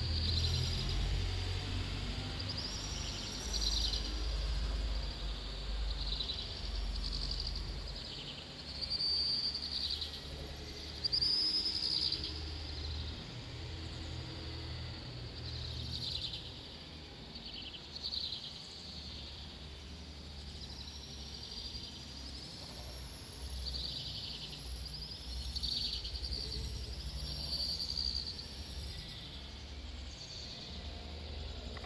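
Small birds chirping: short, high calls come one after another every second or so. A low, steady rumble runs underneath.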